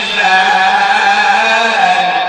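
A young man's solo voice chanting a Maulid recitation, drawing out one long, slightly wavering melismatic note.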